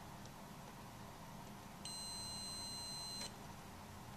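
Digital multimeter set to continuity check, beeping once with a steady high-pitched tone for about a second and a half, starting about two seconds in: the probes on two lead posts have closed the circuit, confirming continuity.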